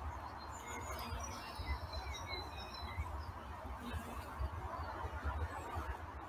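Wild birdsong: a run of short, high chirping phrases, mostly in the first half, over a low steady rumble.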